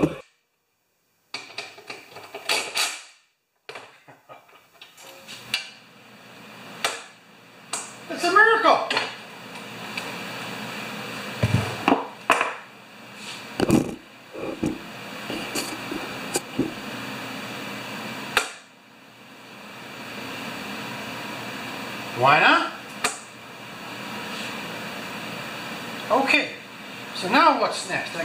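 Scattered knocks and clunks of a plastic lawnmower and tools being handled on a workbench and lift table, over a steady background hum. Brief murmured voice sounds stand out twice.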